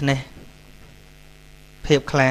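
Low, steady electrical mains hum on the recording, heard through a pause between a man's spoken phrases, with a short burst of his speech at the start and again near the end.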